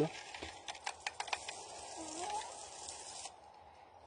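Dry hulled coffee beans rattling and clicking as a hand stirs them in a plastic bowl, winnowing off the last of the papery husk. A soft hiss runs under the clicks and stops a little after three seconds in.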